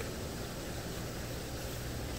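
Steady low hum and hiss of running aquarium systems: pumps and circulating water in the tanks.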